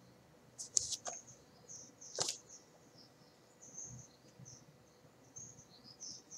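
Faint, scattered high-pitched bird chirps in the background, with a few short clicks and rustles from a paperback book being handled.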